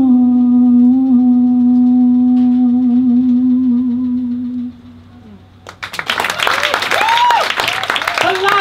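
A man's voice holding one long hummed final note of the song, steady with a slight waver, fading out about five seconds in. About a second later the audience breaks into applause and cheering.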